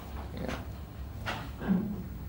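Toilet flushed in the room upstairs, heard faintly through the building as water rushing in the pipes, with a short low sound near the end.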